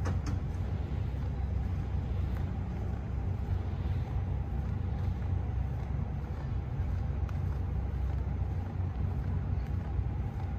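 Steady outdoor street ambience: a constant low rumble with a light hiss over it and no distinct events.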